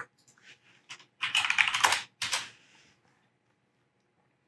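Typing on a computer keyboard: a few scattered keystrokes, then a fast run of keys about a second in that lasts roughly a second and a half and stops before the end.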